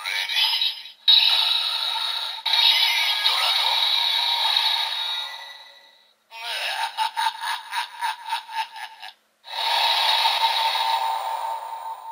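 DX Evol Driver toy belt playing its electronic transformation audio for a Dragon Evol Bottle and Rock Full Bottle combination: a synthesized voice, jingle and sound effects through the toy's small speaker, tinny with no bass. About halfway through it breaks into a fast pulsing, stuttering passage, then settles into a steadier stretch near the end.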